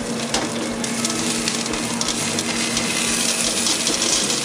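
Hot steak sizzling and crackling on the wire rack and heated pebbles of a freshly opened steam oven, over a steady low hum.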